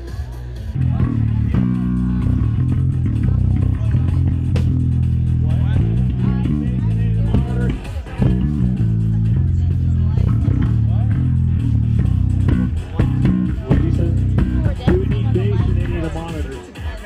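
Electric bass guitar played loud through an amplifier, a run of low notes starting about a second in with a couple of short breaks, as in a soundcheck.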